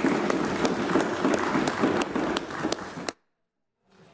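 Members applauding, many quick hand claps together, cutting off suddenly about three seconds in.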